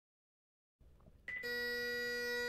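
Silence, then about a second and a quarter in, Highland bagpipes strike up: the steady drone and a held chanter note come in almost together and sound on.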